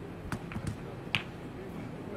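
Snooker balls clicking: four short, sharp clicks over about a second as the cue ball is struck and a red is potted.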